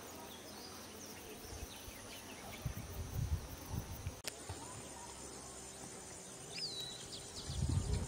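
Rural outdoor ambience: small birds chirping and whistling over a steady high insect trill, with scattered low rumbles. A sharp click about four seconds in, after which the insect trill is steadier and stronger.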